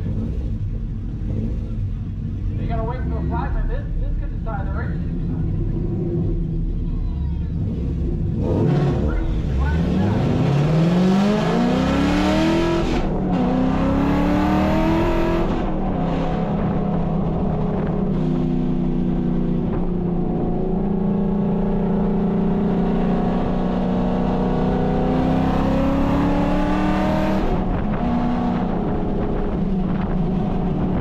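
2013 Ford Mustang GT's 5.0-litre V8 heard from inside the cabin: idling at the start line, then launching about nine seconds in, with the revs climbing hard through the gears and shifts in between. It then runs at a steady speed and eases off near the end.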